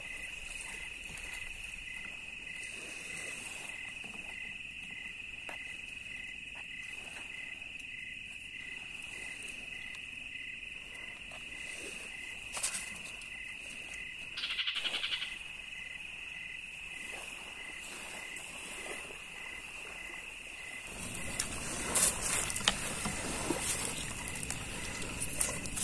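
A night chorus of calling animals: a steady high trill, with a regular pulsing call just below it about twice a second. A louder, buzzing call sounds for about a second midway through. Near the end come clinks and rustles of people eating.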